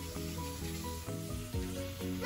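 Faint steady hiss of water and toothbrushing at a bathroom sink, under soft background music.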